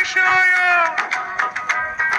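A children's song: a high, cartoon-like voice holds a long note for most of the first second, then sings shorter notes over rhythmic backing music.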